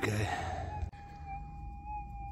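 Minelab GPX 6000 gold detector's steady threshold tone, a faint hum that wavers slightly in pitch. A breathy exhale fills the first second, with a click about a second in.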